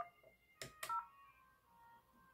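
FortiFone IP phone keypad as the 0 key is pressed: a key click, then a short two-tone DTMF touch tone about a second in, faint.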